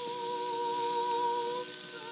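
Operatic soprano voice holding one long note with vibrato over steady accompanying tones, on a 1910 acoustic disc recording with constant surface hiss; the note ends near the end and new notes begin.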